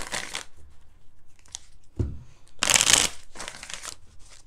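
A deck of cards shuffled by hand, in short papery bursts, with a thump about two seconds in and the loudest stretch of shuffling just before three seconds.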